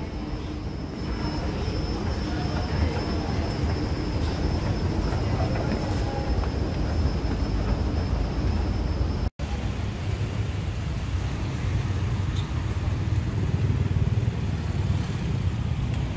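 Steady indoor background hum with a faint high whine while riding an escalator down; after an abrupt cut about nine seconds in, the low rumble of street traffic.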